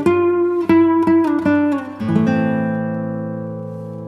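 Background music on acoustic guitar: a run of plucked notes, then a chord about halfway through that rings on and slowly fades.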